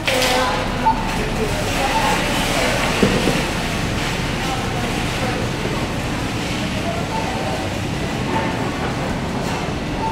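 Pride ZT10 electric mobility scooter driving slowly over a tiled floor: a steady run of motor and wheel noise, with indistinct voices in the background.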